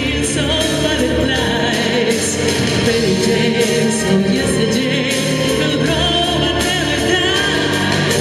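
A woman singing live into a microphone over a continuous instrumental accompaniment.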